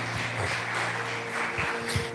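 A congregation applauding, an even patter of clapping, over a soft held chord of background music.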